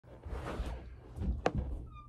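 Handling noise from a phone camera being adjusted on the floor: rustling and low thumps, with a sharp click about one and a half seconds in.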